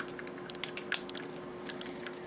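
Small irregular plastic clicks and ticks as the motor pod is worked loose from an SCX slot car's plastic chassis by hand, over a faint steady hum.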